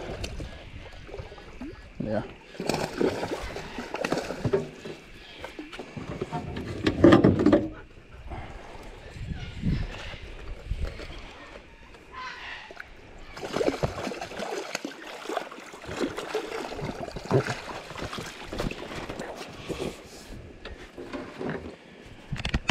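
Hooked Murray cod splashing at the water's surface beside a small boat as it is played in and netted. Irregular splashes and knocks, the loudest about seven seconds in.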